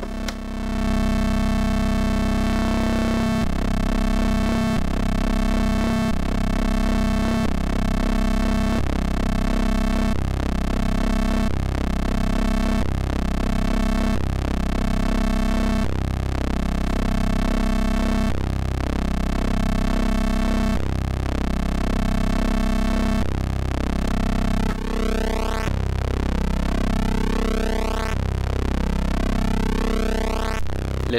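Modular synthesizer drone from a Rossum Trident oscillator wave-spliced through a Klavis Mixwitch, with the square shape's symmetry set. It holds one steady pitch while its timbre shifts in a regular cycle about every second and a half as the waveshape is animated by modulation.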